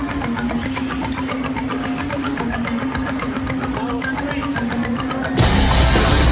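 Rock music with a steady drum beat over a held low note. About five seconds in it jumps to a much louder, denser heavy rock section.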